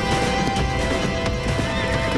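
A horse galloping, hoofbeats thudding in a fast rhythm, with a horse neighing. A music score with long held notes plays over it.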